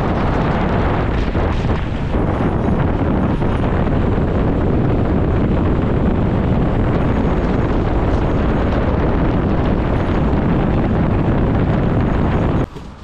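Loud, steady wind buffeting on the camera microphone from a gravel bike riding fast downhill on pavement.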